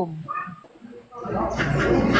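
Wind buffeting a phone microphone over a live-stream call, a rumbling rush of noise that comes in about a second in after a short pause.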